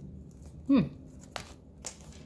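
Handling of a handmade paper junk journal: a murmured "hmm", then two light clicks about half a second apart.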